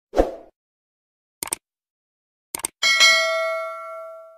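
Subscribe-button animation sound effects: a short pop, two quick clicks about a second apart, then a notification bell ding that rings on and fades out.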